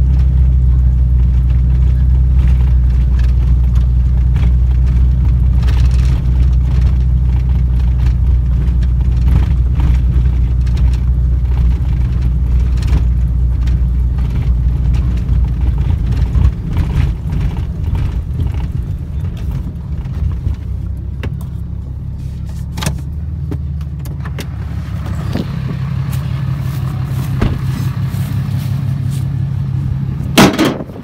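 Pickup truck driving over rough field ground, heard from inside the cab: a steady low rumble of engine and tyres. About halfway through the rumble eases and drops in level, and scattered knocks and rattles come through in the second half.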